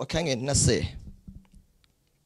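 A man speaking into a handheld microphone for about the first second, then a few faint clicks.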